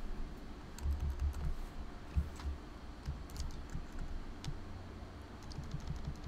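Computer keyboard typing: scattered, irregular keystrokes, fairly faint, as a line of code is deleted and retyped.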